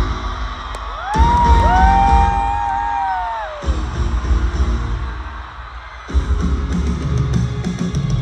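Live rock band music in an arena, loud and bass-heavy. The drums and bass cut out and come back in: they drop near the start, return about a second in, drop again for about two seconds in the middle, and come back near the end. About a second in, two long whoops overlap, rise, hold and then fall away.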